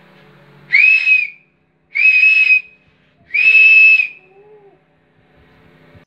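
A whistle blown three times, each a loud blast of under a second at one steady high pitch, about a second and a half apart.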